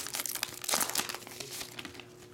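Foil trading-card pack wrapper crinkling and crackling as it is peeled open and the cards are pulled out. The crackle is dense at first and thins out near the end.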